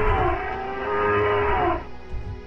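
Long, loud elephant-like bellow given to an animated woolly mammoth: one drawn-out pitched call that dips briefly near the start, holds, and breaks off near the end, over a low rumble.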